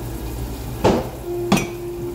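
Two knocks of ceramic mugs being set into a stainless wire dish rack, about a second in and again near the end, the second ringing on briefly, over a kitchen faucet running steadily.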